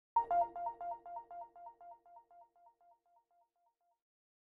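Short electronic intro sting: a two-note falling chime blip repeated about four times a second as an echo, fading away over about three seconds.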